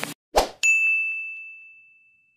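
Sound effects of an animated like-button outro: a short thump, then a single bright ding that rings on one high tone and fades away over about a second and a half.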